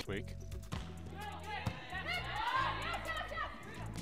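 Volleyball rally court sound: the ball struck a few times, sharpest about a second and a half in, and sneakers squeaking on the court, with low background music underneath.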